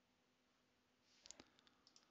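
Near silence, then a few faint, short computer clicks from a mouse and keyboard a little past halfway through.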